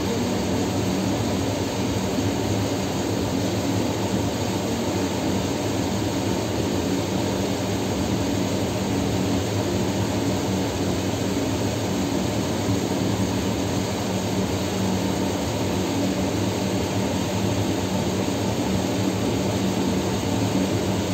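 Steady mechanical drone carrying a low, even hum.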